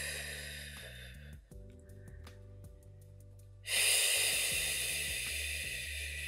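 Two long breaths out through the mouth: one fading out about a second in, the next starting suddenly past the middle and tailing off. Under them, calm background music holds low sustained chords, and faint light ticks of fingertips tapping behind the ears come through in the quieter gap.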